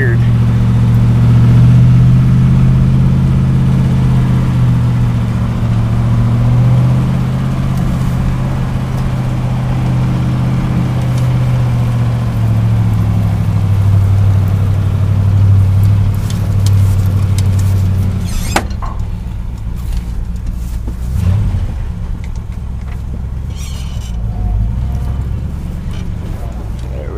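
A 1968 Chevy dump truck's engine heard from inside the cab while driving, a steady low drone from the very low-geared truck. Its pitch steps down about halfway through, and after a sharp click about two-thirds of the way in it runs quieter and lower.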